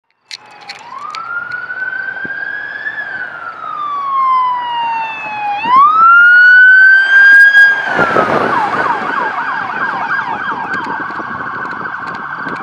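Police cruiser's electronic siren on an emergency response. It sounds a slow rising and falling wail, then switches to a rapid yelp about eight seconds in. It is loudest between about six and eight seconds in as the car passes, with a rush of engine and tyre noise.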